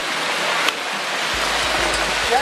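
Hail pelting down on the ground in a steady, dense hiss, with one sharper tick about two-thirds of a second in.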